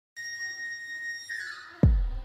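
Intro sound effect: a high whistling tone held for about a second, then sliding down in pitch. It ends in a sudden deep booming hit near the end.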